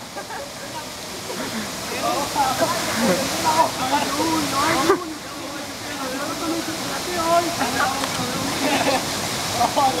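Steady rush of water with several voices talking and calling over it at once. The voices grow louder about two seconds in.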